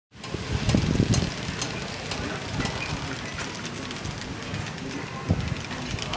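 Busy street ambience: a steady rush of traffic noise with irregular low surges from passing vehicles, louder for the first second or so, and faint scattered voices.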